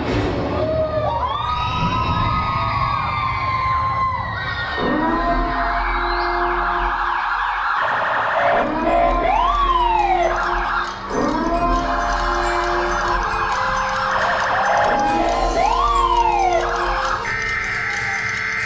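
Performance soundtrack played over a theatre sound system: police-style sirens wailing, each sweep rising and falling, recurring about every six seconds, layered over a dark, sustained music bed.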